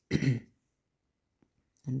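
A man briefly clears his throat, one short sound of about half a second at the start.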